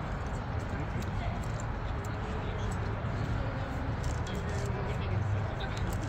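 Indistinct background conversation over a steady low hum; no one speaks clearly close by.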